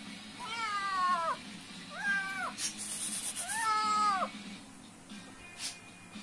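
A young kitten meows three times, high-pitched, each call falling off at the end: a very hungry kitten crying for food.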